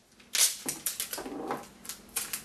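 Masking tape being pulled off the roll and wound around a paper-towel mallet head, a series of short crackling rips at irregular intervals.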